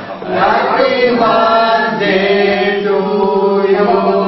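A group of voices singing together in unison, each note held for about a second.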